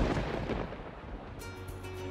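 Thunderclap sound effect rumbling and fading away, with background music of steady held notes coming in about one and a half seconds in.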